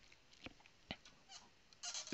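Near silence: room tone, with two faint clicks about half a second and about a second in.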